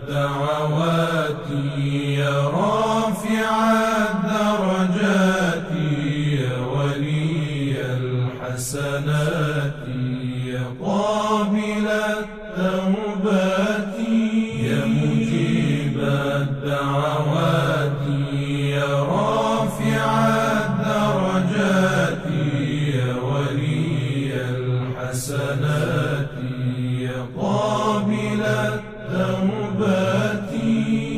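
Devotional vocal chant: a voice sings slow, winding melodic lines over a steadily held low drone.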